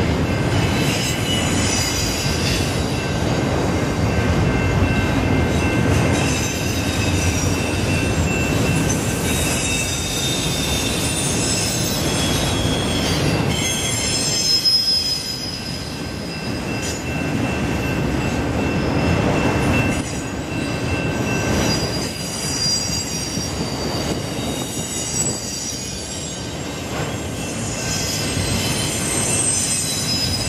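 Freight train of autorack cars rolling past on steel rails, a steady rumble of wheels and car bodies, with high-pitched wheel squeal that comes and goes throughout.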